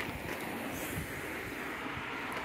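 Faint, steady outdoor background noise with no distinct click, thump or voice.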